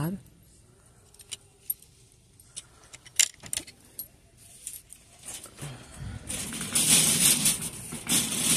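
A few light clicks, then from about six seconds in a loud, continuous metallic jangling rattle while the shopper moves through the store.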